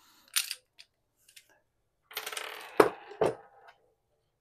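Small metal parts of a laser bore sight, brass pieces and button batteries, clicking and clinking against a hard tabletop as they are handled: one light click, then about two seconds in a rattling clatter of about a second and a half with two sharp clinks near its end.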